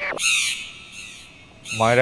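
A man sobbing: a breathy, hissy cry in the first half-second and a weaker one about a second in, before he starts speaking again near the end.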